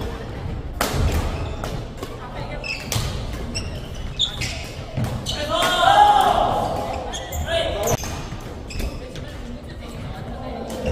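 Echoing badminton-hall sound: short sharp knocks of rackets hitting shuttlecocks and shoes on the wooden court from several games, with players' voices. The loudest stretch comes about six seconds in.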